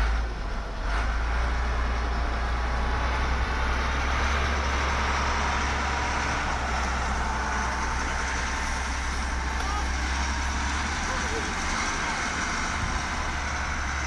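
Steady outdoor background noise with a deep rumble underneath, holding at an even level with no distinct event standing out.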